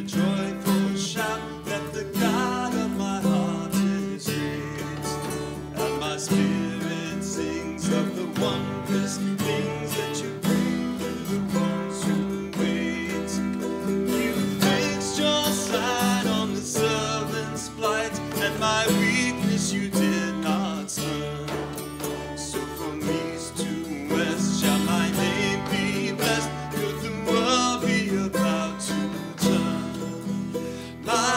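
Small acoustic string band playing an instrumental Irish melody, with mandolin picking over strummed acoustic guitar in a steady rhythm.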